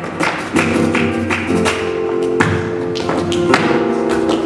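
Live flamenco ensemble playing: held melodic notes over guitar, broken by irregular sharp percussive taps.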